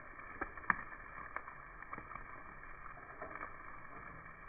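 Chicken pieces sizzling steadily on a charcoal grill, with metal tongs clicking against the wire grate a few times, loudest just under a second in.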